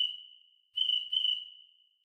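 Cricket chirp sound effect from theCRICKETtoy iPhone app: a pair of short high chirps that fades out at the start, then a second "chirp, chirp" pair about three quarters of a second in. Each pair trails off in a fading high ring.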